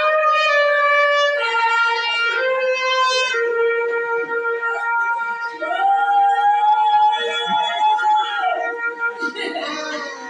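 Trumpet playing a slow melody in long held notes, changing note several times in the first few seconds and then sustaining. Voices join in near the end.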